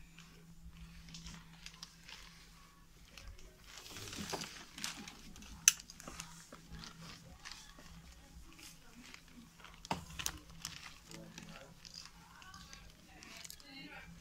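Quiet shop room tone with a steady low hum, faint background voices and rustling handling noise. A sharp click about six seconds in is the loudest sound, with a smaller one near ten seconds.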